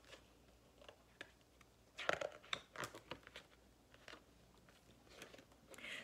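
Pages of a paperback picture book being turned and handled: faint, scattered papery rustles and crackles, busiest in a cluster a couple of seconds in.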